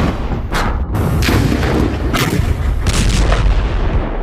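Combat gunfire and explosions: several sharp blasts, roughly one a second, over a heavy, continuous low rumble.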